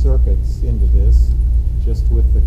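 A man talking, over a steady low rumble.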